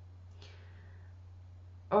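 Quiet pause in a small room: a steady low electrical hum, with one brief faint breath about half a second in.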